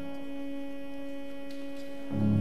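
Pipe organ holding a soft sustained note, the lower bass notes released so that a single steady tone rings on.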